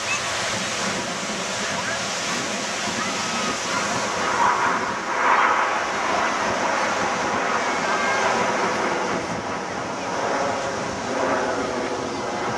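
Steady roar of a formation of BAE Hawk T1 jets flying overhead, swelling about five seconds in, with wind on the microphone.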